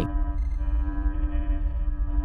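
Ambient drone on the soundtrack: a steady deep rumble with one sustained mid-pitched tone held over it, unchanging for the whole pause.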